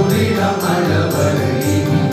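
A group of men singing a Telugu hymn in unison, backed by a steady low beat of about three pulses a second.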